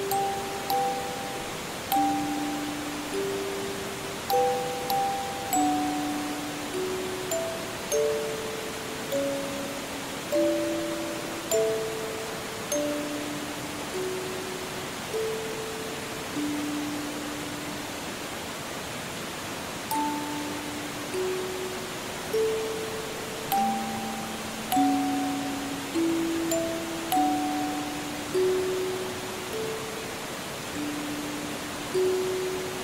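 Music-box melody played note by note, each note ringing and fading, over the steady rush of a forest stream.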